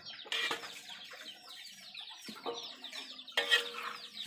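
Domestic chickens clucking and peeping, with short, high, falling calls repeating throughout and two louder calls, one near the start and one near the end.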